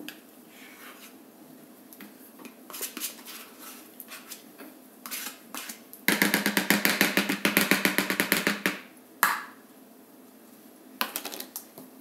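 A metal spoon scraping cream cheese out of a plastic tub. About halfway through comes a loud run of rapid scraping strokes lasting a couple of seconds, with lighter clicks and knocks of handling before and after.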